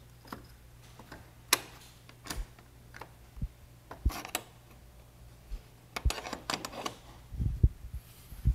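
Scattered sharp clicks and knocks of a roof rack crossbar being worked loose and lifted off the roof rail, with a few low thumps near the end, over a faint steady low hum.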